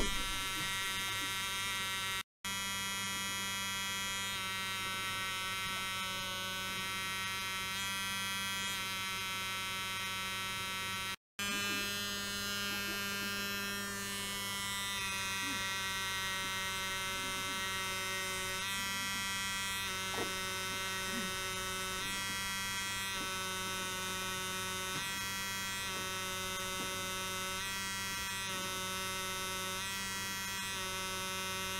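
Steady electrical hum and buzz with many high steady tones above it. The sound cuts out briefly twice, about two seconds in and about eleven seconds in, and the mix of tones shifts after each break.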